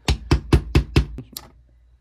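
A small, hard 3D-printed plastic part rapped against the workbench: about eight quick knocks in just over a second.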